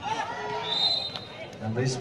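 Players and spectators shouting during a volleyball rally, with a sharp ball strike about a second in. A brief high referee's whistle sounds just before it, marking the end of the point.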